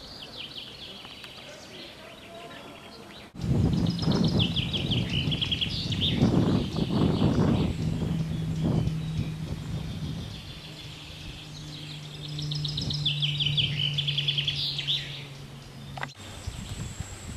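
Outdoor birdsong: small birds repeat quick high chirping trills. A little over three seconds in, the sound cuts abruptly to a louder low rumbling noise that rises and falls, with a steady low hum under the birds from about the middle on.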